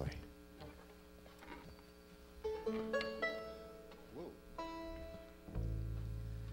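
Plucked stringed instruments noodling: scattered single notes ringing out from about two seconds in, then a low electric upright bass note sounding from about five and a half seconds in and holding.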